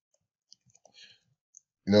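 A few soft, scattered keystrokes on a computer keyboard as a date is typed in.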